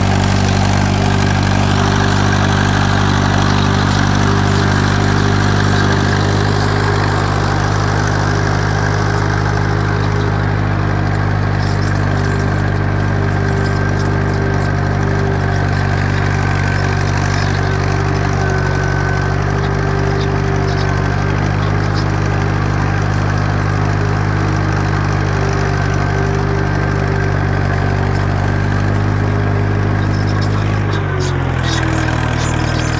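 County Super 4 tractor's four-cylinder diesel engine running at a steady pitch under load while pulling a plough, heard from the driver's seat close to the upright exhaust stack.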